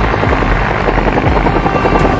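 Bell UH-1 Huey helicopter at close range, its two-blade main rotor beating fast and steadily with the engine running, as it lifts into a low hover.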